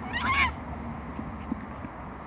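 A silver fox's short, high-pitched squeal during rough play-fighting, its pitch wavering, lasting about half a second right at the start.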